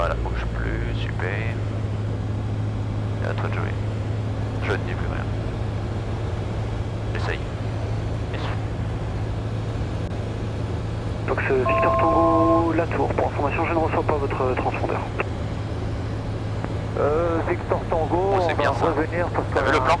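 Robin DR400 light aircraft's piston engine and propeller droning steadily in the cockpit in flight, one even low hum with no change in power.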